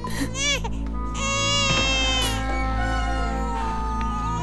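A newborn baby crying: a short cry at the start, then a long, high wail from about a second in, over steady background music.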